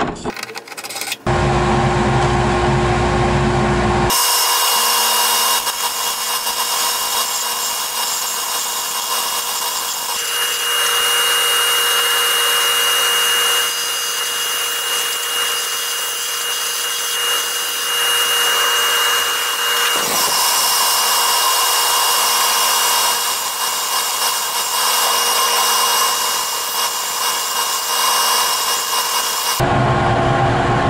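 Benchtop mini wood lathe running while a gouge cuts a spinning wooden blank round: a loud, steady rush of cutting noise with a constant high whine. It starts about four seconds in, after a few handling clicks and a lower hum.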